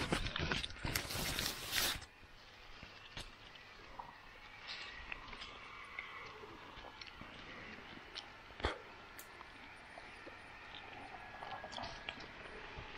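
Cherry-tree leaves and twigs rustling and brushing against the microphone as a hand reaches in among the branches, loud for the first two seconds, then quieter with scattered small clicks and one sharper click.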